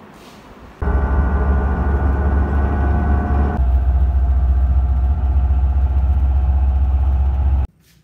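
Inside a moving intercity coach: a loud, steady low rumble of engine and road. It starts about a second in, shifts in character midway and cuts off abruptly near the end.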